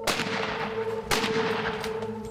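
Hunting rifle fired twice about a second apart, each sharp crack trailing off in a long echo, with a weaker crack near the end.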